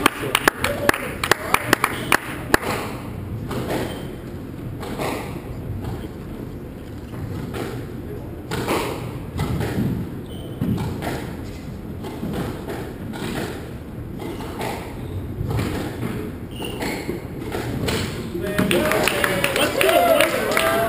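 A squash rally: the rubber ball is struck with rackets and hits the court walls in a series of sharp knocks, with a quick run of hits in the first couple of seconds and then shots about a second apart.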